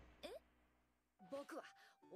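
Mostly near silence from the anime soundtrack: a breathy sigh fades out at the start, then a character speaks a few words in a high voice about a second and a half in.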